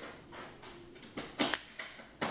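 Ganzo G719 automatic knife firing open: the spring-driven blade snaps out and locks with one sharp click about a second and a half in, among a few softer handling clicks.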